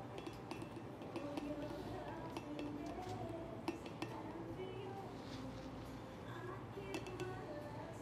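A few light glass clinks as a glass vial of sand is tipped against a glass sand-ceremony vessel, over hushed voices and soft background music.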